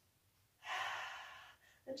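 A woman takes a single audible breath, starting about half a second in and fading over about a second.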